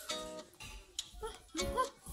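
Background music of plucked acoustic guitar notes.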